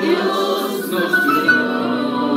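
A small group of male and female voices singing a hymn together into microphones.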